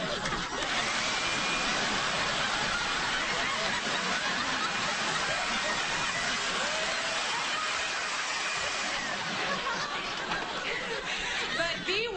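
Handheld electric blower running steadily with a loud rush of air, cutting off just before the end, with some laughter over it.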